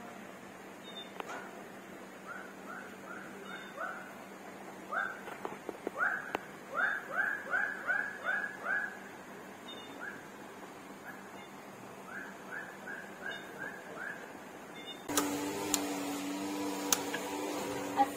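An animal making runs of short, rising chirp-like calls, about two to three a second, in several bursts. Near the end a steady hum with several tones starts suddenly.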